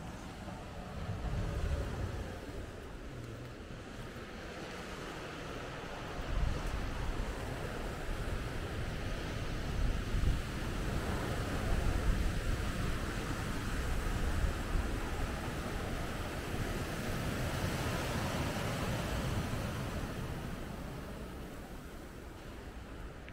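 Sea surf washing and breaking on a rocky shore, a steady rushing wash, with wind buffeting the microphone in gusts.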